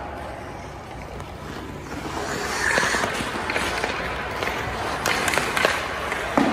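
Ice skate blades scraping and carving on a rink, growing louder from about two seconds in as a skater closes in on the net. A few sharp clicks of hockey stick and puck come in the second half.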